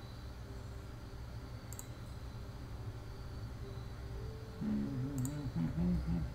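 Computer mouse clicking: two short double-clicks about three and a half seconds apart, over a steady low background hum. Near the end a man's voice hums briefly, the loudest sound.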